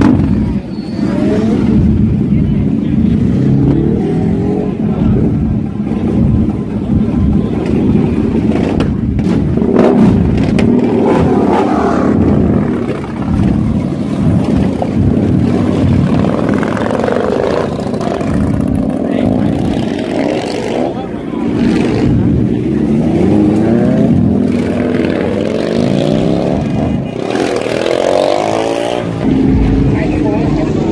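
A large custom cruiser motorcycle's engine running loud and revving up and down several times, with crowd voices mixed in.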